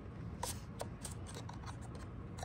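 Faint rubbing and a few light clicks of packing foam being worked free by hand from a model diesel locomotive's plastic shell.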